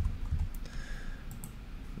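Computer keyboard keys clicking as a word is typed, a few quick keystrokes in the first half second.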